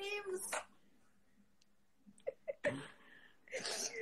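A woman laughing briefly, then the sound drops out to silence for over a second. A few faint clicks follow, and short bursts of voice come back near the end.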